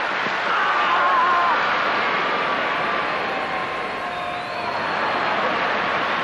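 Stadium crowd noise swelling as a javelin is thrown, with a long, wavering shout rising above it about half a second in.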